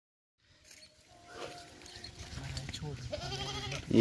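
Barbari goats and kids bleating, starting faintly after a brief silence and growing louder from about halfway in.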